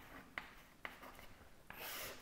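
Chalk writing on a chalkboard: a few faint, light taps and scratches as a short expression is written.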